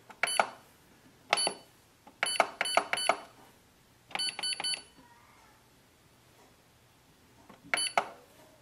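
Canon Pixma G4470 control panel beeping at each button press: short, high beeps, some single and some in quick runs of three, with a gap before a last beep near the end.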